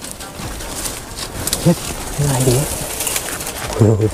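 A bird cooing low in short, steady calls, mixed with brief speech and some rustling clicks.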